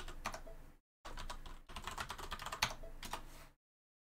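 Computer keyboard typing: a quick run of key clicks as a command is typed, cut off abruptly by short dead-silent gaps.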